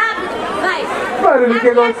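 Speech over a microphone with crowd chatter behind it.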